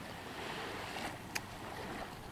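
Steady hiss of light surf washing onto a sandy shore, mixed with wind, with a faint click a little past the middle.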